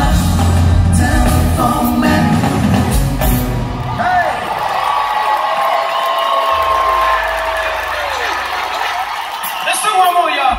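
Live R&B concert sound in an arena, heard from the audience: the band's music with heavy bass plays for about three seconds, then the bass drops out and long held vocal notes carry on over crowd whoops.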